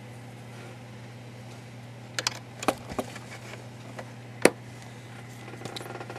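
A steady low electrical hum with a few sharp clicks and taps of small parts and tools being handled over an open radio chassis, the loudest click about four and a half seconds in.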